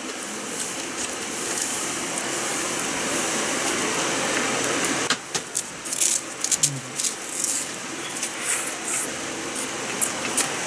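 A steady rushing noise for about five seconds that cuts off suddenly. Then a wooden spoon scrapes and digs into shaved ice in a plastic cup in a run of short sharp clicks, with a brief low hum near the end.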